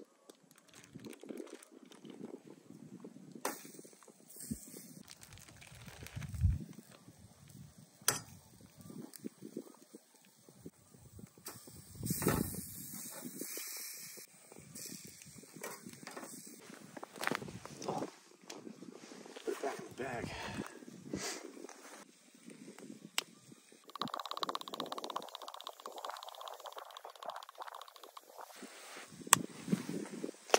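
Irregular rustling and crinkling of a plastic bag being cut open and raw chicken breast being laid into a frying pan on a butane camp stove, with several sharp clicks and knocks.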